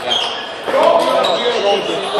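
Table tennis balls clicking off rubber paddles and bouncing on tables in a large hall, with a loud human voice starting about two-thirds of a second in and carrying on to the end.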